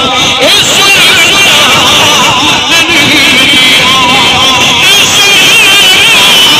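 A man's voice amplified through a microphone and loudspeaker system, very loud, reciting in a drawn-out, wavering melody rather than plain speech.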